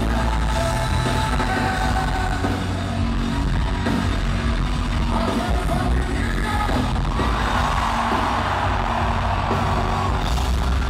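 Loud rock music with a large arena crowd singing along and cheering; the crowd noise swells over the last few seconds.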